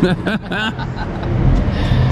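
Laughter dying away, then a steady low engine hum from a vehicle that grows louder from about a second in.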